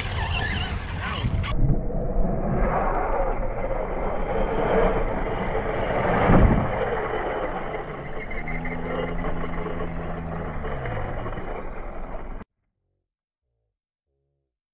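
Outdoor running noise of a 6S RC monster truck driving over dirt, with a rough, steady rumble, a low thump about six seconds in, and a low hum that drops in pitch between about eight and eleven seconds. The sound cuts off abruptly near the end.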